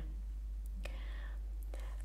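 A short pause in a woman's spoken narration: a steady low hum runs underneath, with a soft breath in the middle and two faint clicks.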